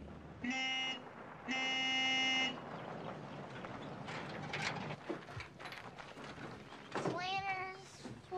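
Car horn honked twice, on one steady pitch: a short toot, then a longer one of about a second.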